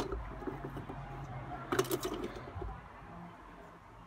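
Handling noises of the engine oil dipstick being drawn from its tube and wiped with a cloth rag: a short click at the start and a second cluster of clicks and rustling just under two seconds in.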